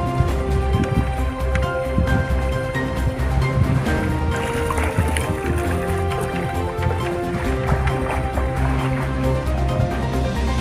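Background music with held tones over a pulsing bass line.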